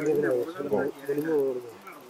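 A man's voice talking in drawn-out, wavering tones, without clear words.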